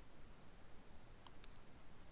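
Quiet room tone with a single faint, sharp click about one and a half seconds in.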